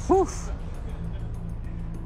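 Game-show background music: a low, sustained bed of tones that holds steady, with a short 'whew' of relief right at the start.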